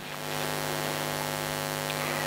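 Steady electrical mains hum with many evenly spaced overtones over a constant hiss.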